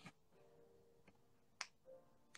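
Near silence: faint room tone broken by two short, sharp clicks, the louder one about a second and a half in.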